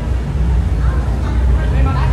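Steady low rumble of an idling vehicle engine, with people's voices faintly over it.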